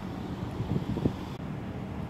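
Low, steady outdoor rumble with wind on the microphone, and a few faint knocks about a second in.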